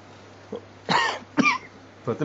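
A person coughing twice, two short bursts about half a second apart, starting about a second in.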